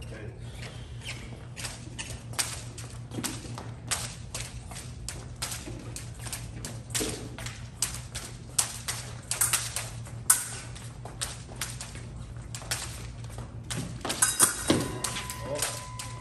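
Fencers' footwork tapping and thudding on the piste, with sharp clicks of epee blades, all through the bout. A quick flurry of steps and blade contact comes near the end, and then the electric scoring machine starts a steady beep that signals a touch.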